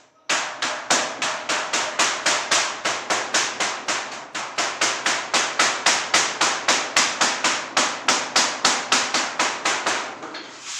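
A wooden mallet beating a metal sheet flat on the floor, for the back panel of a sheet-metal almirah. The strikes are loud and rapid, about four a second, starting a moment in and going on steadily.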